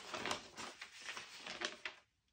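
Sheets of paper being leafed through and turned over, a run of short irregular rustles and flaps.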